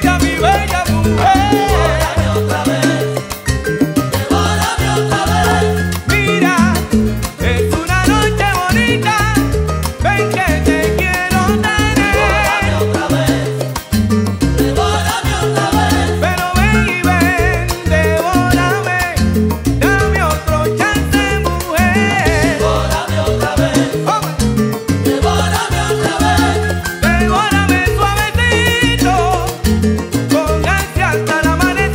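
Live salsa band playing: a full arrangement with a steady bass line and percussion keeping the rhythm, and melodic lines over them.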